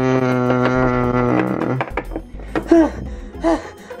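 A low, buzzy note is held steady for about two seconds and ends with a short falling step. A few brief breathy vocal sounds follow.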